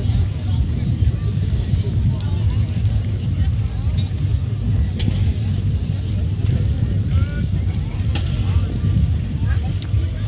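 Outdoor festival crowd ambience: scattered voices of people nearby over a steady low rumble, with a few faint clicks.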